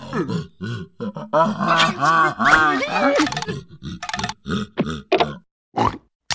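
Wordless cartoon character voice: grunts and bending vocal noises, then a string of short clipped sounds and a brief pause near the end.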